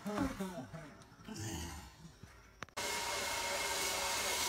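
Zip-line trolley running along the steel cable: a steady whirring hiss with a faint thin whine that starts abruptly about three-quarters of the way in. Before it there is only faint low sound after a voice trails off.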